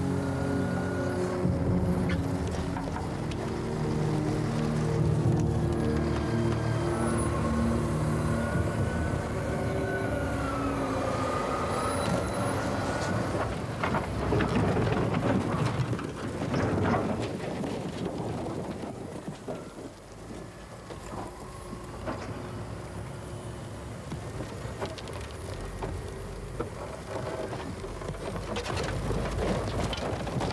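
Heavy diesel earth-moving machine running under load as it shoves scrap cars through sand. About halfway through comes a series of crashes and metal crunches as cars tumble down a sandbank.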